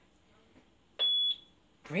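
A single short, high-pitched electronic beep, about a third of a second long, about halfway through.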